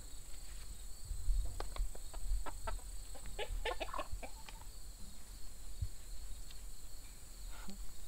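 Hens clucking: a string of short, clicky clucks, bunched in the first half, while a hen is being handled.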